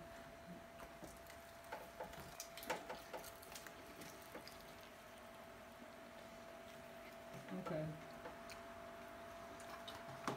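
Faint sounds of people eating sauced chicken wings: scattered small wet smacks and clicks of biting and chewing, mostly in the first few seconds, over a faint steady hum.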